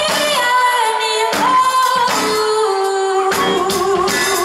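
A female singer singing live into a microphone over a band, holding long notes that glide from one pitch to the next. The backing is light, with more low end coming in near the end.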